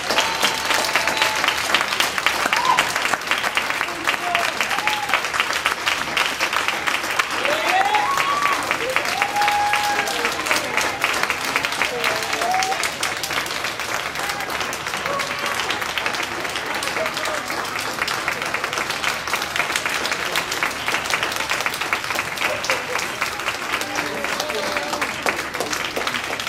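Audience applauding, dense steady clapping with voices calling out over it, easing slightly in the second half.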